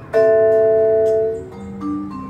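Vibraphone played with mallets: a chord struck just after the start rings for over a second, then a low note and a couple of quieter higher notes follow near the end.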